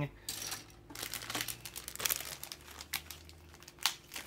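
Clear plastic bags crinkling as plastic model-kit runners are handled, with irregular crackles and a few sharper clicks of the plastic.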